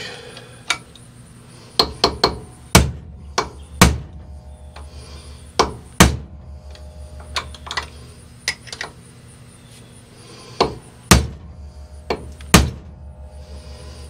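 Hammer striking a steel punch held against a hydraulic cylinder's threaded gland, to knock the gland loose: a dozen or more sharp metal whacks at an uneven pace, a handful of them much harder than the rest. The gland does not budge.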